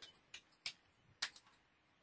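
Near silence with three faint computer keyboard and mouse clicks.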